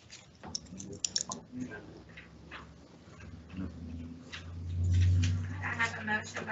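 Quiet meeting-room sounds: scattered light clicks and taps, then a low hum that swells and fades about five seconds in, with a voice starting just before the end.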